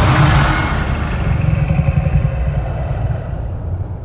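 Deep, sustained low rumble from trailer sound design, with a wash of higher hissing noise at the start that dies away over the first second.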